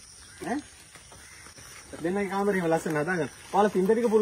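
People's voices in conversation: a short vocal sound about half a second in, then a voice speaking from about two seconds in.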